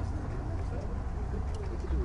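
A man's voice chanting low and drawn out, its pitch wavering up and down, over a steady low rumble.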